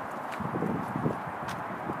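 A few irregular footsteps on asphalt, about half a second to a second and a quarter in, over a steady outdoor hiss.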